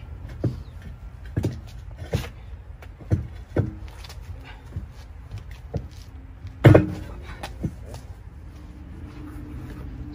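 Tire irons knocking and clanking against a steel truck wheel as a new drive tire is levered onto the rim by hand: a scatter of irregular knocks, the loudest about two-thirds of the way through.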